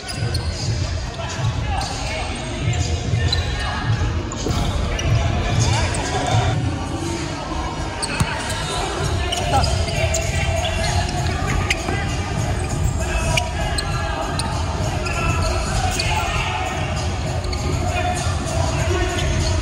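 A futsal ball being kicked and bouncing on a hardwood sports-hall floor during play, with voices calling out, all echoing in the large hall. A sharp knock stands out about eight seconds in.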